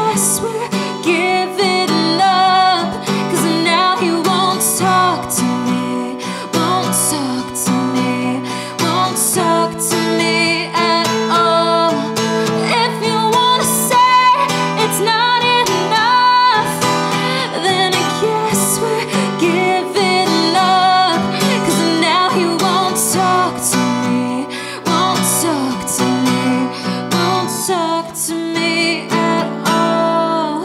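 Woman singing live to her own strummed Taylor acoustic guitar, played with a capo.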